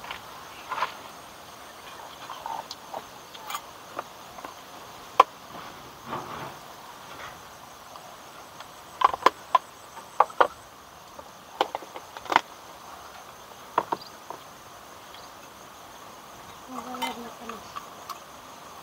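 Scattered sharp clicks and taps of a spoon against small plastic bowls and containers as they are handled, over a steady high chirring of insects.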